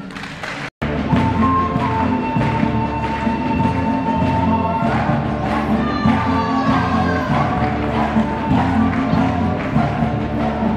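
Live Bolivian folk band playing music for the Atiku dance: violins carrying the melody over a steady drum beat, starting about a second in.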